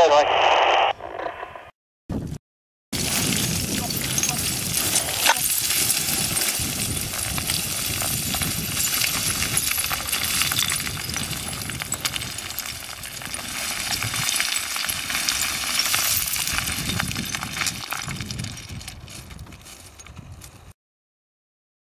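Boots descending loose scree, the stones clattering and clinking underfoot in a continuous stream, fading near the end. A short burst of voice over a two-way radio comes in the first second.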